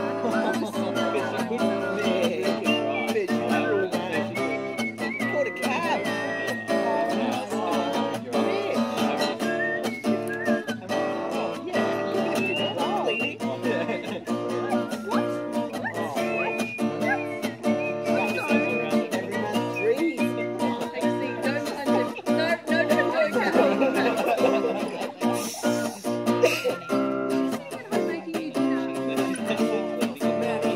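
Acoustic guitar being played, a continuous run of plucked notes and chords.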